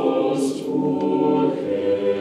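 Mixed choir of men and women singing a cappella, holding sustained chords in close harmony that move to new notes twice. A short sibilant consonant sounds about half a second in.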